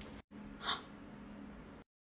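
A single short, breathy puff or intake of breath about two-thirds of a second in, over faint room tone. The sound cuts to silence near the end.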